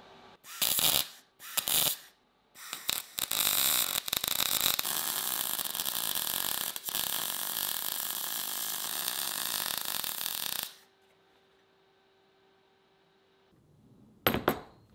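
Electric arc welding: two short crackling bursts, a few stuttering starts, then a continuous weld of about six seconds that cuts off suddenly near 11 s. A faint steady hum is left after the arc stops.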